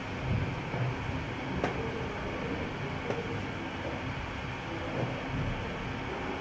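Steady rumbling room noise with a few low thumps, the strongest near the start, and two sharp clicks about a second and a half apart in the middle.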